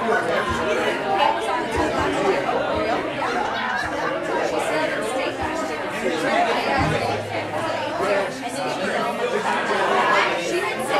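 Audience chatter: many people talking at once in a large room, with a few low thumps.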